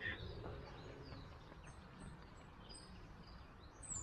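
Faint outdoor ambience in woodland: a steady low rumble with small birds chirping faintly, short high notes repeating every second or so from about halfway in.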